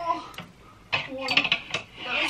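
Clothes hangers clinking and scraping against a metal wardrobe rail as an armful of hanging shirts is lifted off, a few sharp clicks over the two seconds.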